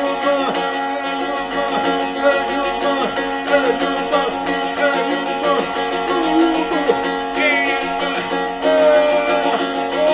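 Sharkija (šargija), a long-necked Balkan lute, plucked over a steady sustained drone, with a man singing in long, bending phrases.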